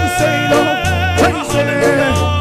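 Live worship music with a band: a singer holds long notes with vibrato over repeating bass notes and a steady drum beat.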